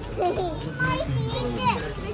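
Children's high-pitched voices chattering and exclaiming, with other voices in the background.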